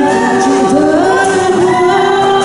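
Live acoustic band music: a harmonica plays a melody of held notes that slide and bend, over acoustic guitar and cajon.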